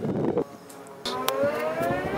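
Vectrix Maxi-Scooter's electric drive whining as the scooter rides up. The whine starts about halfway in and rises slowly in pitch.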